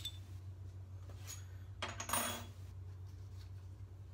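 Metal R41 safety razor being handled: a light metallic click at the start and another a little over a second in, then a short louder clattering rustle about two seconds in, over a steady low hum.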